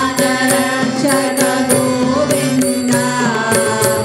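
Voices singing a Hindu devotional bhajan to harmonium, with tabla and dholak drums keeping the beat.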